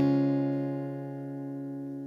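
Acoustic guitar's last strummed chord of the song ringing out and slowly fading, with no new strokes.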